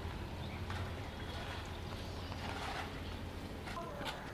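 Quiet outdoor background while people walk on a rough street: faint footsteps over a steady low rumble.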